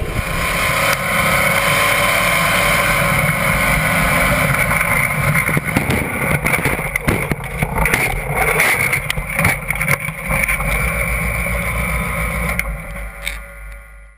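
Steady rushing drone with a low rumble in the cockpit of an off-road rock racer that has just crashed and rolled. From about five seconds in, scattered knocks and rattles break in, and the sound cuts off at the end.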